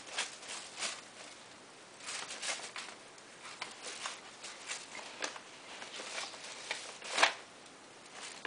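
Thin plastic shopping bag crinkling and rustling in irregular bursts as a Maltese puppy roots in it and tugs at it with her mouth, with the loudest crackle about seven seconds in.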